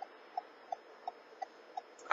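Car turn-signal indicator clicking in an even rhythm, about three clicks a second, over faint cabin road noise.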